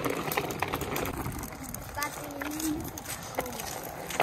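A child's bicycle rolling slowly on a concrete sidewalk, with irregular clicks and crunches from the wheels and from footsteps walking alongside. A brief faint voice about two seconds in.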